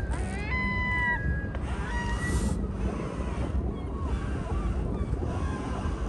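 A gull calling: a rising call that levels off into a held note for about half a second, followed by a few shorter calls over the next second or two and fainter ones later, over a steady low rumble of wind.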